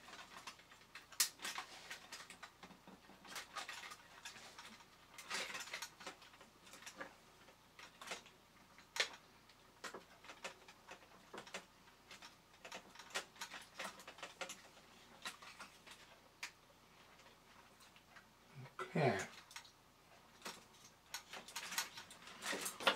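Faint, irregular clicks, taps and scrapes of a small hand tool and fingers working the metal tabs and panels of a 1960s Japanese toy robot's body as it is closed up.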